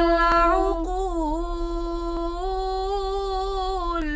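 A girls' nasheed group singing a cappella, holding one long drawn-out note that dips briefly in pitch about a second in.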